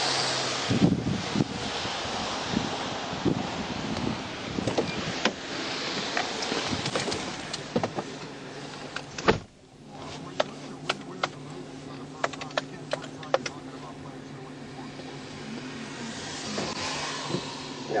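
Outdoor traffic noise on a wet road with scattered footsteps and knocks. About nine seconds in a car door slams shut, and the outside noise drops away to the steady hum of an idling vehicle heard from inside, with light ticking. A passing car swells up near the end.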